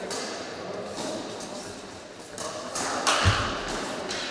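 Reverberant sports-hall din of indistinct voices and scattered sharp knocks, with one louder dull thump about three seconds in.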